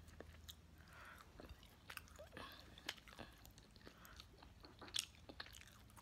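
Quiet chewing and mouth sounds of a person eating, with scattered small clicks, the loudest about five seconds in.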